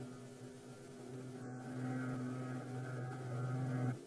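Propeller aircraft engine drone at a steady pitch, growing slowly louder through the takeoff run.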